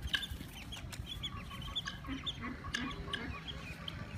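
Young chicks and ducklings peeping over and over in short high notes, with a hen's low clucks about two to three seconds in.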